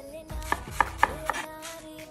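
Chef's knife chopping red onion on a wooden cutting board: four sharp strokes about a quarter-second apart, starting about half a second in.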